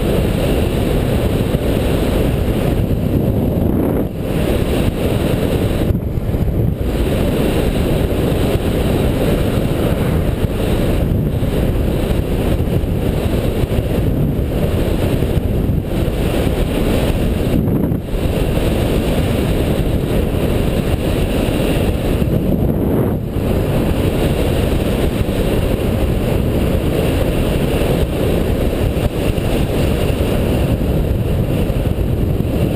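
Wind rushing over the camera microphone on a fast downhill ride, a loud, steady rumbling noise heavy in the low end, with a few brief dips.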